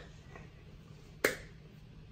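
A single sharp click a little over a second in, short and crisp, against quiet room tone.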